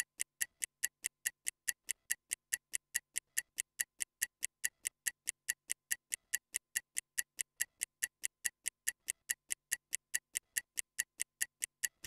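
Stopwatch ticking sound effect, an even run of sharp ticks at about five a second, timing a 15-second recovery rest between exercises.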